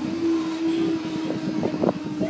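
Train horn from a Class 143 diesel unit, sounded as one long steady note on the approach to the level crossing, over a background rumble.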